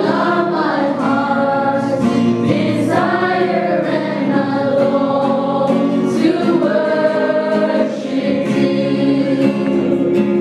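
A choir singing a gospel song, with long held notes.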